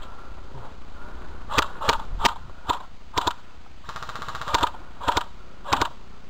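Airsoft guns firing in sharp single cracks, several in a row about half a second apart, with a short rapid burst around four seconds in.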